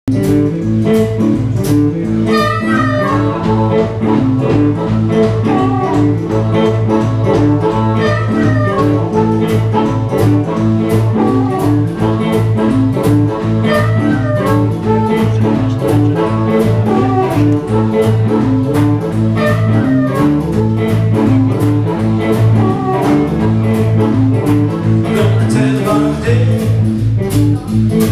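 Live blues band playing an instrumental passage: electric guitar, bass guitar and drums keep a steady repeating groove while a harmonica, cupped to the singer's microphone, plays bending phrases over it.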